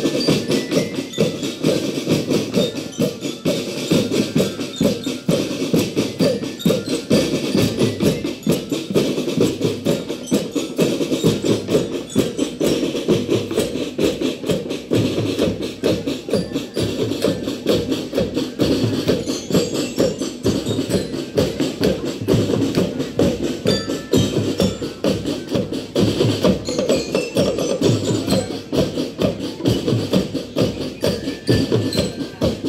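School marching drum band playing a fast, continuous drum cadence on snare and bass drums, dense with rapid strokes.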